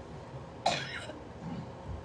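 A person's single short cough, about two thirds of a second in, followed by a couple of soft low thumps.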